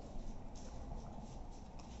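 Corgi puppy gnawing a raw chicken leg: faint chewing with a few small, sharp clicks of teeth on bone.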